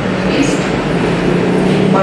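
A steady low rumble like a running engine, under a haze of room noise and faint talk.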